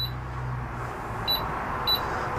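Three short electronic beeps from a caravan range hood's touch controls as it is operated: one at the start, one about a second and a half in and one near the end. Under them runs a low hum that stops about a second in, with a steady airy noise behind.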